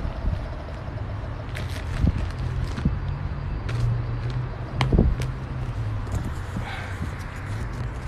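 A steady low engine hum, with a few short knocks from handling on the stone quay.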